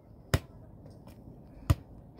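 An anyball, a training ball, being struck upward twice, about 1.3 s apart, each hit a sharp crack.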